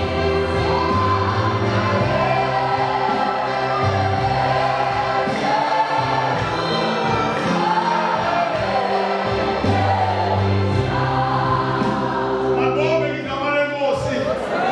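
A group of voices singing a gospel hymn in harmony over sustained low notes. Near the end the singing gives way to one man's voice.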